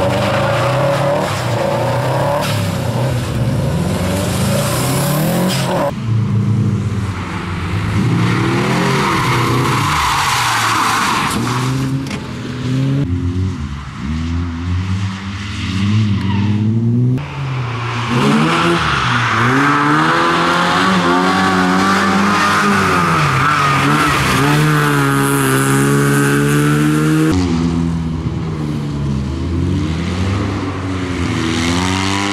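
Rally car engines revving hard through a tight corner, several cars one after another. The pitch climbs and drops again and again with throttle and gear changes, over tyre noise on the wet tarmac, and the sound switches abruptly from one car to the next at the cuts.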